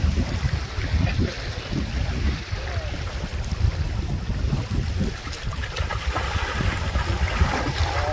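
Wind buffeting the microphone in a steady, gusty rumble, over small lake waves lapping at the shoreline.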